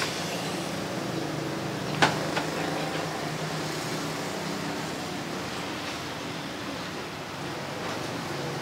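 Steady background noise of a busy noodle shop with a traffic-like rumble, and a sharp clink of ceramic tableware about two seconds in.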